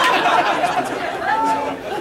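Small club audience laughing together, dying down near the end.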